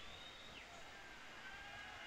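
Faint open-air football-field ambience: a low, even hiss with a few thin, drawn-out distant calls or shouts.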